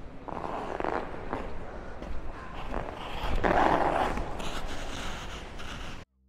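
Figure skate blades scraping on the ice, a rough hiss with a low rumble that swells about a second in and is loudest around three and a half to four and a half seconds in.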